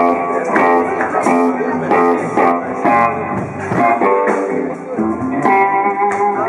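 Live blues band: a Stratocaster-style electric guitar playing blues lines over bass and drums, with regular drum and cymbal hits.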